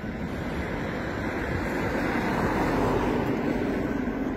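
Street traffic: a car driving past, its engine and tyre noise slowly swelling to a peak about three seconds in, then easing slightly.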